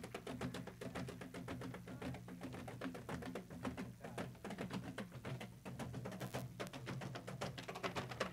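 Wooden drumsticks of a Rwandan ingoma drum troupe tapping lightly and rapidly, a dense stream of small wooden clicks.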